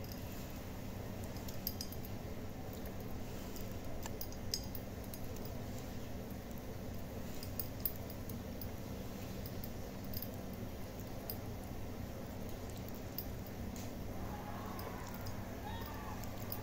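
Popping candy (Pop Rocks) crackling in a mouth: sparse, irregular faint clicks over a steady low background hum.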